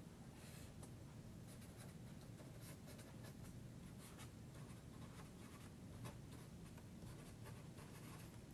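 Felt-tip marker writing words on paper: faint, irregular scratchy strokes.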